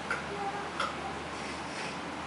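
Three soft, short clicks spaced irregularly over a steady background hiss.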